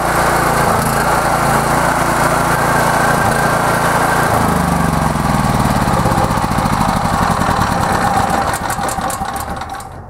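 A Vanguard gasoline engine on a Porter-Cable 5500-watt portable generator runs steadily with no load just after a recoil start. Its pitch shifts slightly about four seconds in, and it gets somewhat quieter near the end.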